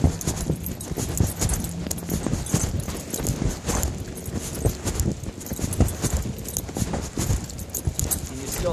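Handling noise from a camera or phone being moved about: a dense, irregular run of knocks, rubs and rattles.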